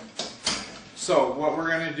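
Mostly speech: a few short, sharp noises in the first second, then a person starts talking about a second in.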